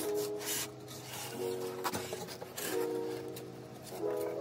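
Cardboard packaging rubbing and scraping in a few short bursts as a flat-pack desk panel is slid out of its box, over soft melodic background music.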